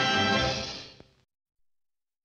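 Orchestral closing theme music ending on a held chord that fades out about a second in, then silence.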